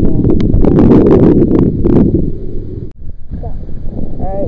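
Wind buffeting the microphone, with scattered clicks in the first two seconds. The sound drops out suddenly about three seconds in, then the wind noise comes back.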